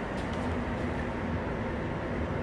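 A steady mechanical hum with an even hiss beneath it, unchanging throughout: background machine noise in a garage.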